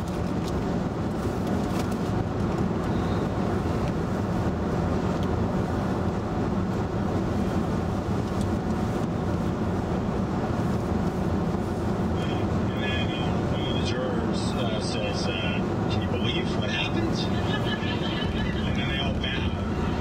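Steady tyre and road noise heard inside a 2011 VW Tiguan's cabin at highway speed, an even low rumble. In the second half, short higher-pitched sounds come and go above it.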